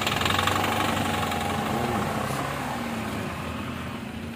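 Engine of a stopped truck idling close by, a steady hum with a fine fast pulse that slowly grows quieter.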